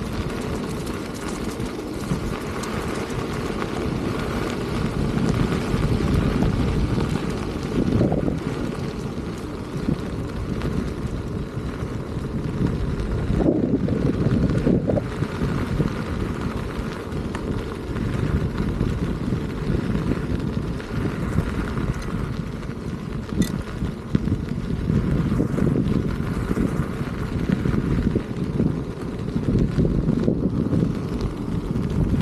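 Wind buffeting the microphone, with a low, steady rumble from an electric unicycle rolling over a gravel path, and a few brief gusts.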